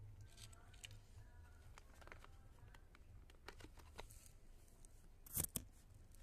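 Faint rustling and crinkling of a plastic bag of cat food being handled, with scattered soft clicks and a short loud crackle about five and a half seconds in.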